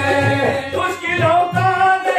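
Qawwali: men singing to harmonium accompaniment, with a steady hand-drum beat underneath.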